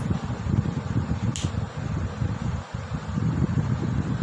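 Low, uneven rumble of moving air on the microphone, with one short click about a second and a half in.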